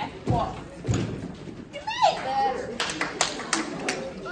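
Two heavy footfalls of a dancer stepping on a stage platform in the first second, a short vocal whoop about two seconds in, then a quick run of about five hand claps near the end.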